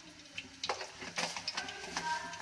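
Cumin seeds sizzling faintly in hot ghee at the bottom of a pressure cooker, with small crackles, starting a little under a second in.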